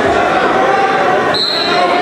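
Spectators talking and calling out in a gym during a wrestling match, with one short, steady high whistle blast about one and a half seconds in.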